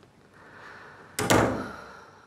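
A wooden interior door is swung shut and closes with a loud thud a little over a second in. A soft swish of the swing comes just before, and the bang rings briefly after.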